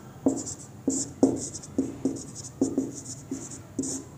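Marker pen writing on a whiteboard: a quick run of short strokes, each with a sharp tap and a high squeak, about two a second.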